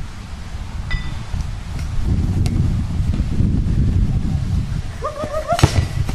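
Low wind rumble on the microphone, with a short shout and then a single sharp knock near the end as players swing baseball bats at the ball.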